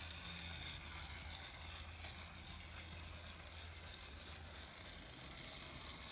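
Playcraft 0-4-0 model locomotive running steadily around the track with goods wagons in tow: a quiet, even motor hum with its wheels running on the rails.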